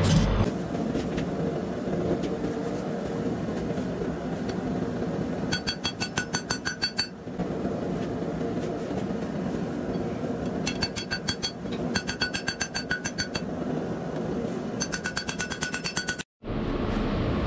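Hand hammer striking hot bed-frame steel on a railroad-track anvil, in three quick runs of ringing metallic blows: about five seconds in, around eleven to thirteen seconds, and again near the end.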